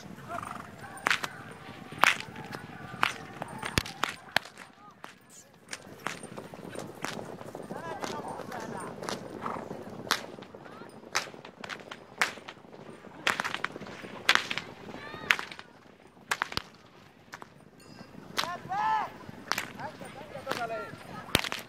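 Herdsmen's whips cracking over a herd of horses being driven: about a dozen sharp, single cracks at irregular intervals, with voices in between.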